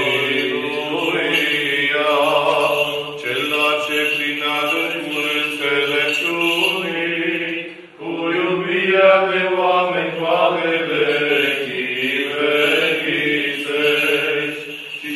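Romanian Orthodox memorial chant (parastas) sung by voices: a slow melody over a held low drone note. There is a brief break about eight seconds in.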